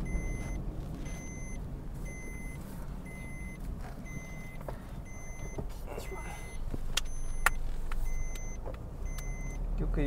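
Inside a moving car: steady engine and road rumble, with a dashboard warning chime beeping about once a second. A couple of sharp clicks come a little past the middle.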